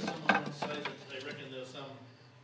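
A wooden beehive frame knocking and clattering against a hive box as it is lowered into it: one sharp knock about a third of a second in, then a few lighter clicks.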